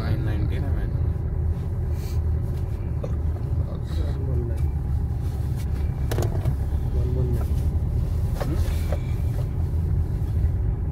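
Steady low road and engine rumble heard from inside a moving car's cabin, with faint voices now and then.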